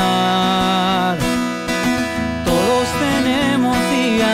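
Acoustic guitar strummed in a country song, with a man's voice holding a long sung note that ends about a second in, then singing again in the second half.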